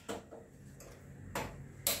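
Two sharp metallic clicks about half a second apart near the end, as a kadhai is handled on the grate of a steel gas hob. The rest is quiet.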